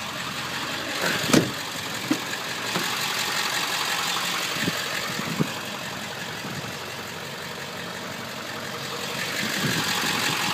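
Ford 7.3 L Powerstroke turbo-diesel V8 of a 1999 F-350 idling steadily, heard from inside the cab, with a few light knocks.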